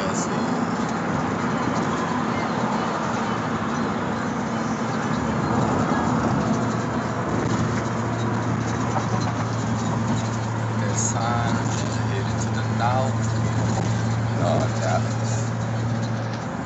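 Steady road and engine noise inside a car's cabin at freeway speed, with a low steady hum that comes in about halfway through.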